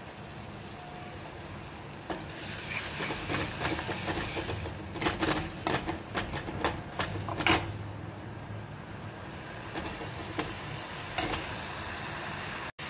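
Spiced tomato masala sizzling in a steel kadai over a gas flame. The hiss rises about two seconds in, and dried fenugreek leaves (kasuri methi) are sprinkled in. Several sharp clicks and scrapes follow in the middle, and a steel spoon stirs near the end.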